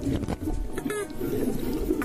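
Dolphins calling underwater: short squeaky whistles that sweep up and down in pitch, mixed with a few clicks, over a constant watery hiss.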